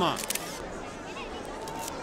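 Camera shutters clicking: a quick cluster just after the start and another near the end, over a low crowd murmur.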